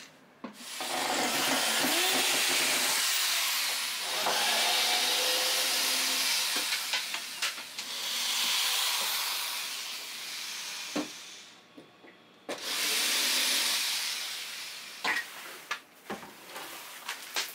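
Shop vacuum or dust extractor switched on and running, a loud steady rushing of air through the hose. It cuts out for a moment about three-quarters of the way through, runs again, and stops with a few clicks near the end.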